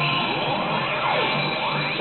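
Pachislot Zegapain slot machine playing its electronic music and sound effects in its 'Zega Zone' AT mode, a dense mix of sweeps gliding up and down in pitch over steady tones.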